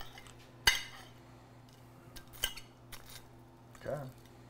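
A metal fork clinking and scraping against a plate while cutting a crispy fried waffle: one sharp clink under a second in, then a few softer clicks.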